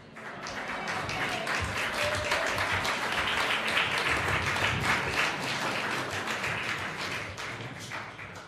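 Audience applauding: many hands clapping together, building over the first second or so, holding steady, then beginning to thin out near the end.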